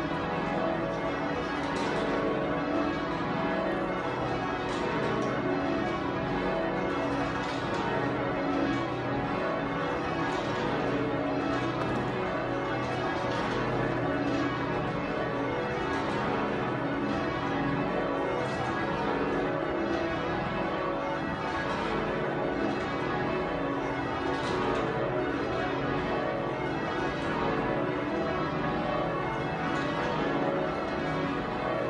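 A ring of twelve Taylor church bells with a 50-cwt tenor in B, rung full circle in call changes: a steady, unbroken run of strikes with the bells' ringing tones overlapping.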